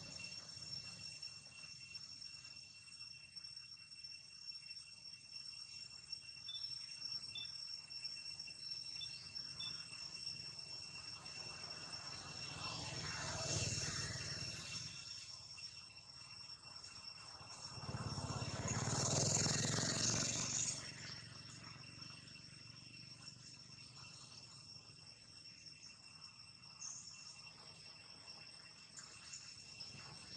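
Steady high-pitched drone of insects, two even tones held throughout. A broad rush of noise swells up briefly a little before halfway and again, louder, for about three seconds about two-thirds of the way through.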